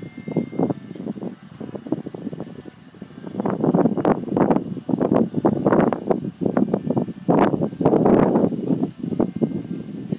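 Wind buffeting the microphone in irregular gusts, growing stronger about three and a half seconds in and easing near the end.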